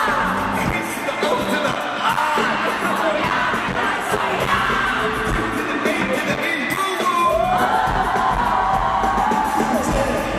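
Live pop music played over a concert sound system, with a man singing into a handheld microphone and the crowd cheering.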